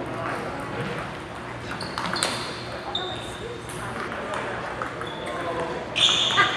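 Table tennis ball clicking off paddles and table during play, with a few short high squeaks and background chatter in a large hall.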